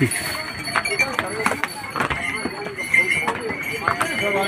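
Horses' hooves clip-clopping at an irregular pace on a stone-paved path, with people talking around them.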